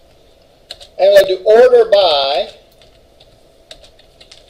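Typing on a computer keyboard, with scattered separate key clicks. About a second in, a short burst of voice lasting about a second and a half is the loudest sound.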